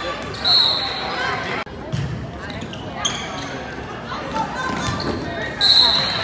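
Referee's whistle blown in two short, high blasts, one about half a second in and one near the end, marking the end of a rally and the signal to serve, over spectators chattering in a reverberant gym.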